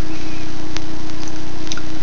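Steady electrical hum and hiss with a buzzing low tone, the recording's own background noise, fairly loud; a faint click a little under a second in.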